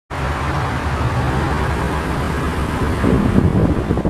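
Steady engine and road noise from a motor vehicle close by, with wind rumbling on the microphone. The higher hiss falls away about three and a half seconds in.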